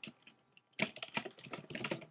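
Typing on a computer keyboard: after a short pause, a quick run of key clicks starts just under a second in.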